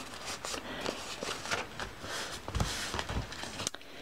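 Paper envelopes rustling and crackling as they are handled and folded, with small taps and a soft low bump a little past halfway.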